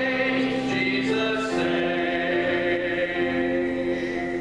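A man singing a church song at a grand piano, accompanying himself, with long held notes.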